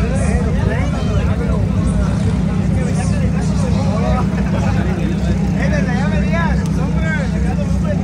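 A crowd shouting and cheering over a car engine running loud and steady.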